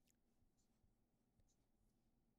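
Near silence, with a few faint scratches of an ink pen drawing on paper.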